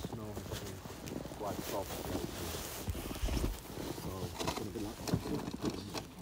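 Indistinct voices talking, with a low rumble underneath.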